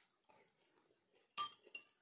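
A metal spoon clinks once against glass about one and a half seconds in, leaving a short ring.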